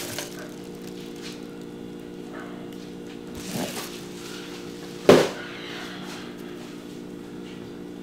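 Plastic mailer bag and cardboard box being handled during an unboxing, with faint rustles and one short thump about five seconds in, the loudest sound. A steady low hum runs underneath.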